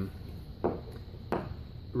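Two short knocks, about two-thirds of a second apart, as the capsule polisher's plastic baffle ring is handled among the parts on the table.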